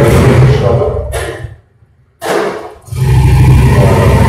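A man talking, with a brief break of near silence just before the middle, where the recording cuts.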